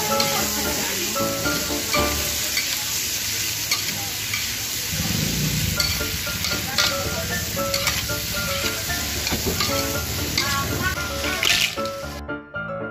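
Shrimp sizzling in a hot metal wok as they are stirred and turned with metal tongs. Scattered clicks and scrapes of the tongs against the pan come through the frying, and soft piano background music plays underneath.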